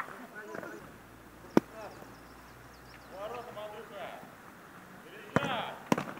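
Players' voices calling across an outdoor football pitch, with a single sharp smack of a football being struck about a second and a half in and another loud knock with a shout near the end.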